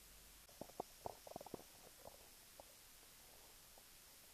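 Near silence, with a few faint, very short pitched blips clustered in the first second and a half.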